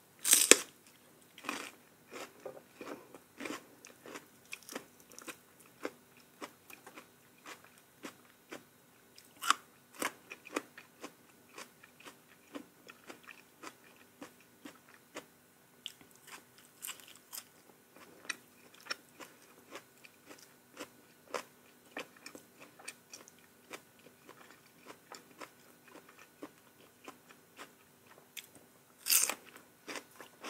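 Close-miked chewing and crunching of a mouthful of fresh greens with eggplant-chili dip, with many small wet mouth clicks. There is a loud bite about half a second in and another loud burst of noise near the end.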